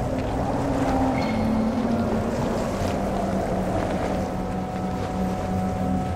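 A steady low droning hum over an even wash of noise, resembling a boat engine on water, with a brief high tone about a second in.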